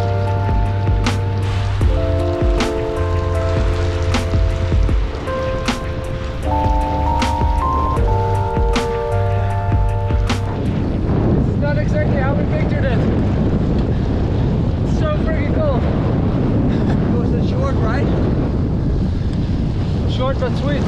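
Background music with held chords that change every couple of seconds over a bass line and a light, regular beat. About ten seconds in, the music gives way to a steady rush of wind on the microphone of a moving bicycle rider.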